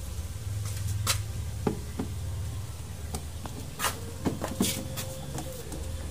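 Scattered sharp clicks and light knocks from a screwdriver and hands working at the refrigerator's lower rear panel, over a low steady hum.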